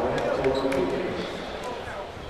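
A basketball bouncing on a hardwood court, with arena voices and crowd chatter behind it, the overall sound easing down.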